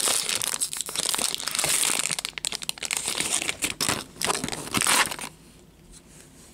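Foil wrapper of a Topps baseball card pack crinkling loudly in the hands as the stack of cards is worked out of it, in quick irregular crackles. It stops suddenly about five seconds in.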